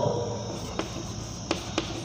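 Chalk on a blackboard as a word is written: a few short, sharp taps and strokes, over a faint, steady high-pitched drone.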